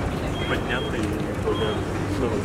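Busy city street: traffic rumbling steadily under the chatter of passing pedestrians, with a couple of short high-pitched beeps.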